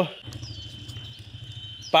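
A faint low hum with a quick flutter, and a couple of short high chirps about a second in and near the end.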